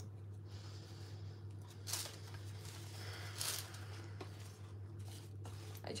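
Baking parchment lining a loaf tin crinkling twice, about two and three and a half seconds in, as hands press into it. A steady low hum runs underneath.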